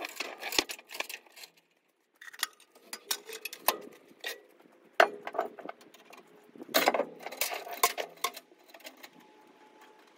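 Steel tie-down chains clinking and clanking in irregular bursts as they are worked tight over a tractor on a trailer deck. There is a short pause about two seconds in; the loudest clanks come around five and seven seconds in, and the clinks grow fainter near the end.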